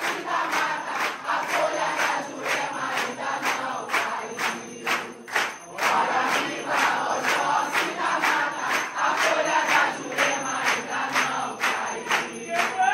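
A congregation singing an Umbanda ponto together, with steady rhythmic handclapping about two to three claps a second.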